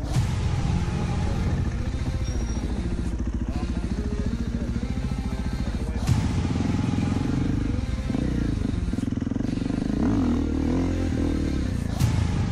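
Enduro dirt bike engines running, with the pitch rising and falling near the end as a throttle is worked.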